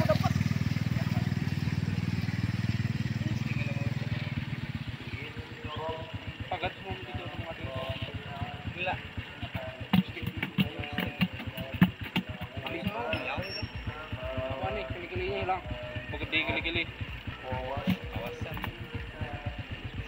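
A motorcycle engine passing close by, its low hum fading away over the first four or five seconds. After that, faint voices talking, with a few clicks.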